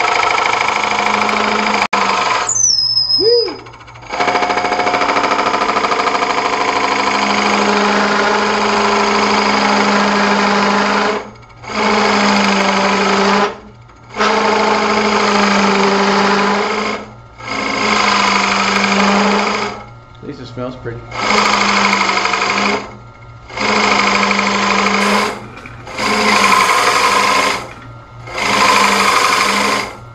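Wood lathe spinning a wooden block while a large drill bit fed from the tailstock bores into it: loud cutting noise over a steady motor hum, coming in repeated bursts of one to several seconds with short dips between as the bit is advanced and backed out. A brief falling squeal about three seconds in.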